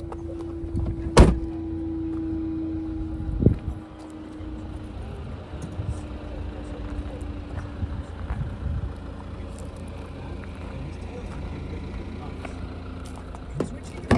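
Nissan Qashqai tailgate pulled down and shut with a loud slam about a second in, followed a couple of seconds later by a softer thump. A low rumble runs underneath.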